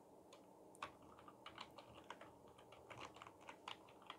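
Faint computer keyboard typing: a scattered run of light key clicks as code is edited.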